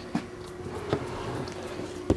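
Quiet room tone with a steady faint hum, and a couple of light clicks from a plastic water dish and tub being handled.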